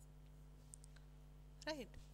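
Faint light taps of a stylus on a touchscreen whiteboard: a tap at the start and two quick clicks a little under a second in, over a steady low electrical hum. A woman's single word near the end.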